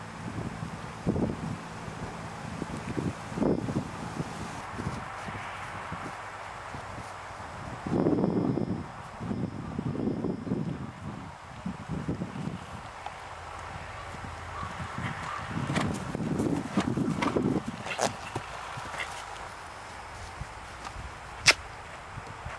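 Horse cantering on grass, its hooves thudding dully on the turf in several groups of beats, loudest about 8 to 11 seconds in and again around 16 seconds. A few sharp clicks come near the end.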